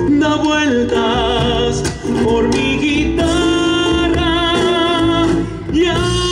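A man singing an Argentine zamba over instrumental accompaniment, ending on a long note held with vibrato from about three seconds in.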